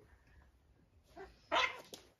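Cat giving a short, sharp cry during a play-fight, with a softer one just before it, near the end.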